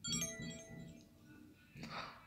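BlackBerry Curve 9380 smartphone playing a short electronic chime through its speaker, several bright tones that start at once and fade away over about a second.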